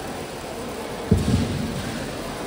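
Steady crowd and hall background noise, with one low, heavy thud about a second in, followed by a few lighter knocks.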